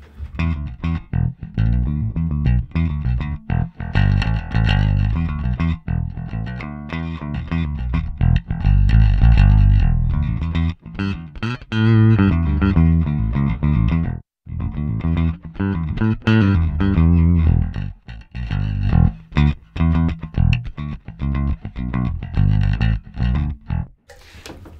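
Electric bass guitar played through channel A of a Two Notes Le Bass preamp pedal into a Markbass Big Bang amplifier, giving a clean, modern-sounding bass tone. The sound cuts out for a moment about 14 seconds in.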